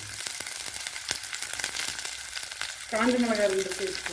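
Sliced shallots and garlic cloves frying in oil in an aluminium kadai: a steady sizzle with many small pops and crackles. A person's voice is heard briefly near the end.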